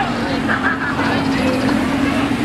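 Lamborghini Huracán's V10 engine running with a steady, even note as the car drives slowly past.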